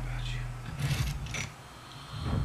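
A low, steady drone in the trailer's score fades away within the first second, followed by a few short, faint noises and a quieter stretch.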